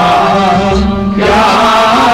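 Kashmiri folk song: a male voice singing a long, wavering melodic line over a steady instrumental drone, with a short break a little after one second.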